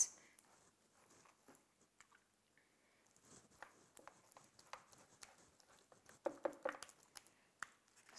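Faint, soft wet dabs and ticks of a silicone basting brush spreading a mustard paste over raw pork ribs, starting about three seconds in after near silence.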